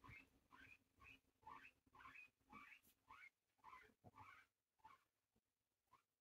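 Guinea pig giving a run of faint, short rising squeaks, about two a second, trailing off near the end.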